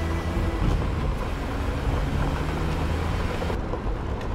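A Tata SUV's engine running as it drives fast across sandy, rough ground, with steady tyre and road noise.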